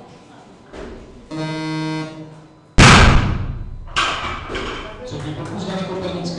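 A steady electronic tone sounds for about a second: the referee's down signal for a completed lift. About three seconds in, a loaded barbell dropped from overhead crashes onto the lifting platform with a loud bang and bounces once a second later. Voices follow.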